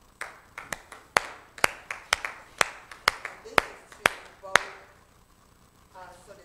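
Light applause from a few people: sharp hand claps, the loudest coming about twice a second with fainter ones between, dying out after about four and a half seconds.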